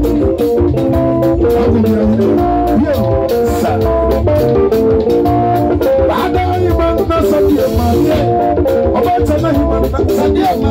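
Live band playing upbeat dance music: busy interlocking guitar lines over a bass line and a steady drum beat.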